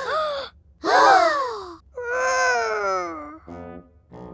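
Cartoon children's voices gasping and crying out in dismay, three times in a row, the last a long falling "oh" wail, with a short low buzzy sound near the end.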